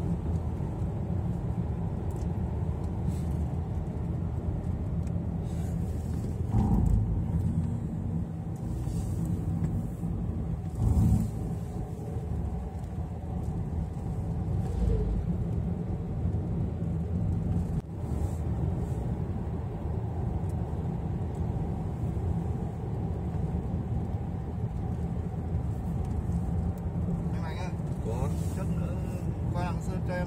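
Car interior noise while driving: a steady low engine and tyre rumble, with two louder bumps about seven and eleven seconds in.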